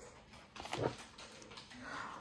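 A dog whimpering briefly, a short sound about two-thirds of a second in.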